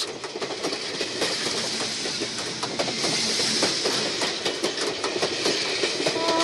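Old wooden passenger carriage of the Sóller railway in motion, heard from on board: steady running noise of the wheels on the rails with frequent irregular clicks and rattles.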